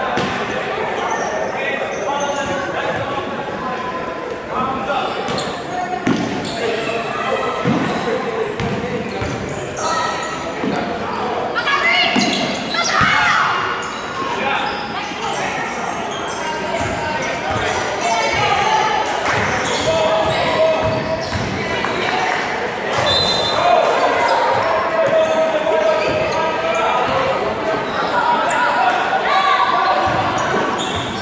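Basketballs bouncing on a hardwood gym floor, with many overlapping, indistinct voices echoing in the large hall.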